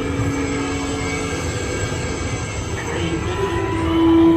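Steady low rumble of the Haunted Mansion's ride cars moving along their track, with a few low notes held steadily over it. Another held note comes in near the end.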